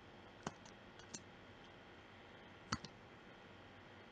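A few short, sharp computer mouse and keyboard clicks over a faint steady hiss: single clicks about half a second and a second in, then a close pair just before three seconds in.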